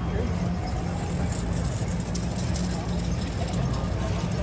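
Street crowd chatter over a steady low rumble, with no clear words.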